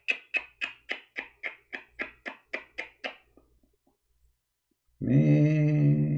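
A quick, very even run of sharp clicks, about four a second, stops about three seconds in. Near the end a steady low hummed tone is held for about a second and a half.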